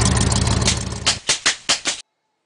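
A motor running with a steady buzz, then switching on and off in about five short bursts in the second half before stopping abruptly.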